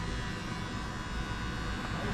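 Electric hair clippers running with a steady buzzing hum as they trim the hair around the ear.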